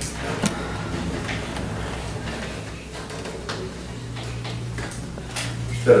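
Room tone in a meeting room: a steady low electrical hum, a second hum tone joining about four seconds in, and a few faint clicks and rustles from people shifting at a table.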